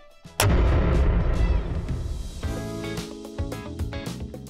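One loud hand clap about half a second in, carrying a deep boom that dies away over about two seconds. Music with sustained tones then comes in.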